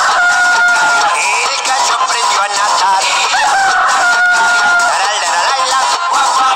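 Two long cartoon chicken calls in a crowing style, each rising and then holding a steady note, about three seconds apart, over a children's song's backing music.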